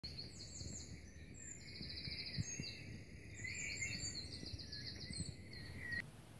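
Songbirds singing: a run of rapid high trills and chirps over faint low background noise, cutting off suddenly at the end.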